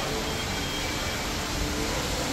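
Steady background noise of an indoor hall: an even hiss with faint, indistinct distant voices and no distinct events.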